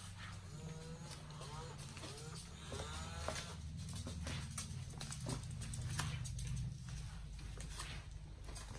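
Playskool Kota the Triceratops animatronic toy playing its baby-dinosaur calls through its speaker: a few short bleating, mooing calls that glide up and down in pitch during the first half, over a low steady hum and scattered clicks.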